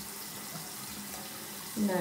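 Tap water running steadily into a bathroom sink, a constant even hiss.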